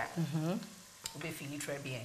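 Women's voices in short, brief phrases, over a faint steady hiss.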